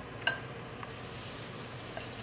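A metal slotted spoon clinks once against a glass bowl of melted white almond bark a quarter second in, followed by a fainter tick; otherwise only a faint steady room hiss.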